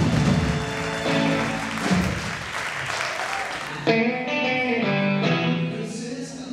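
Live band music led by electric guitar, with applause over the first couple of seconds, then separate plucked guitar notes ringing out.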